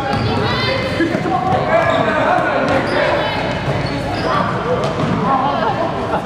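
A basketball being dribbled on a gym's hardwood floor, a few scattered bounces under the continuous shouts and chatter of players and spectators in the hall.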